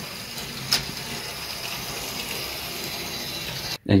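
LEGO Monorail 6399 train's motor running steadily as it drives along the toothed monorail track, with one sharp click about three-quarters of a second in. The sound cuts off suddenly near the end.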